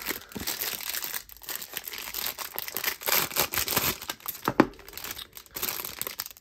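Knife packaging being unwrapped by hand: a continuous run of irregular crinkles and rustles.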